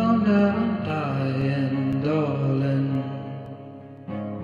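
A man sings a drawn-out, chant-like vocal line with no clear words over acoustic guitar. The voice bends in pitch and fades out near the end.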